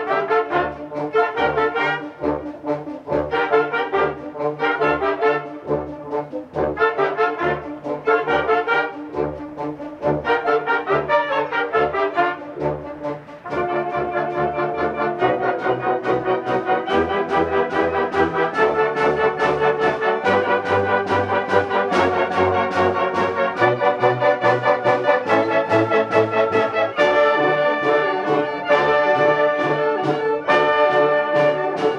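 Concert band of brass and woodwinds playing a piece. For the first half, short low bass notes pulse about twice a second under the melody. About halfway through, the music turns louder and fuller, with held chords over a bass line that steps from note to note.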